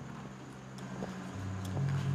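An engine running with a steady low hum that gets louder about three-quarters of the way through.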